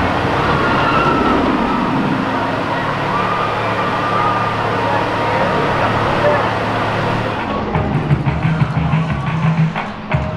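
Steel roller coaster train running on its track, a steady rumbling noise with people's voices over it. About seven and a half seconds in the sound turns duller and choppier.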